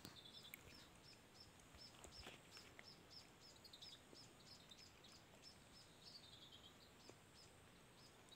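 Near silence, with a faint bird call: a short, high chirp repeated about three times a second for several seconds.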